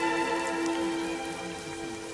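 Slow background music with long held notes, layered over a steady sound of rain falling, getting a little quieter toward the end.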